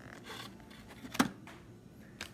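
Plastic blister pack of toothbrushes being handled, with light rustling and one sharp knock a little over a second in.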